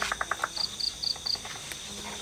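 Crickets chirping: a steady high trill with high chirps pulsing about four times a second. A brief run of rapid clicks comes at the very start.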